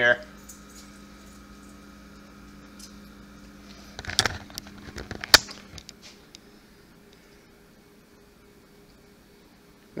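A faint steady electrical hum, with a short cluster of clicks and knocks about four seconds in, ending in one sharp click, from a pint glass and the camera being handled.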